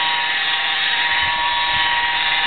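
Electric rotary polisher running steadily with its foam pad working over a truck's painted door: a constant motor whine over an even rushing noise.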